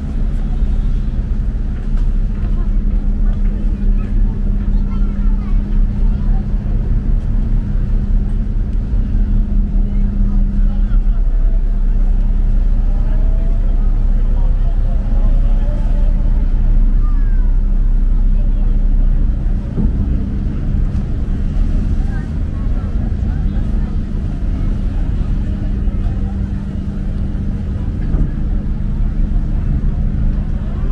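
Ferry's diesel engine running with a steady low drone and hum, dropping a little in level about twenty seconds in as the boat comes alongside the pier. Passengers' voices underneath.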